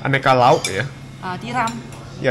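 A voice speaking over light clinking of dishes and cutlery at a restaurant food counter.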